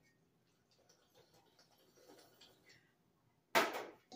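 Faint soft scraping of a spatula stirring frosting in a bowl, then, about three and a half seconds in, a short loud slurp as a child drinks milk from a bowl.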